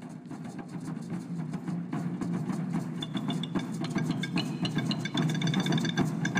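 Ensemble of Mexica (Aztec) percussion, mainly tall upright wooden drums, played live together in a dense, continuous rumble of strikes that grows louder. Bright, high ringing tones join about halfway through.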